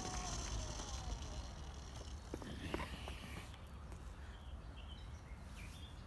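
DTM electric scooter rolling over a paver-block path, its low rumble fading as it slows, with a faint whine falling slightly in pitch in the first second or so and a few light knocks.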